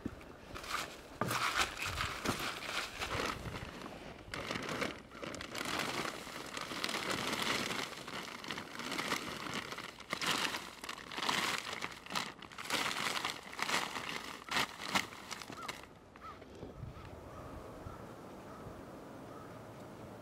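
Black plastic tarp crinkling and rustling in irregular bursts as it is handled and pulled over a compost pile. The rustling stops about four seconds before the end, leaving a steady faint hiss.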